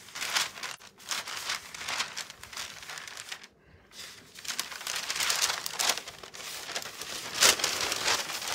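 Thin decoupage tissue paper crinkling and rustling as it is handled and pulled apart along a brush-wetted line. There is a short pause about halfway through.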